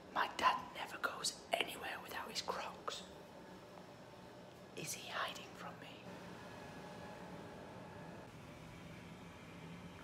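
A man whispering short phrases for about the first three seconds and again briefly around five seconds in, then quiet room tone with a faint steady hum.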